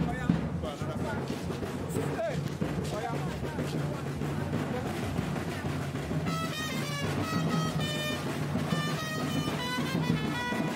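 Live band music with a steady low bass line. A melody of held, pitched notes comes in about six seconds in, with voices in the background.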